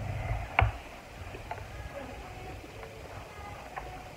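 Quiet chewing and mouth sounds of someone eating soft cake. There is one sharp click about half a second in, and a few fainter clicks follow.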